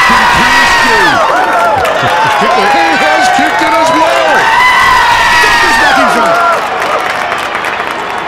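A drawn-out "yee-haa!" yell, held long and high, over a stadium crowd cheering a goal. The yell and the crowd noise die away near the end.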